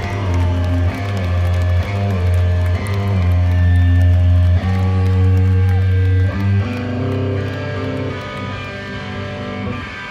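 Live rock band playing: electric guitars and bass guitar hold loud chords that change about once a second, then settle on a long held chord that eases off over the last few seconds.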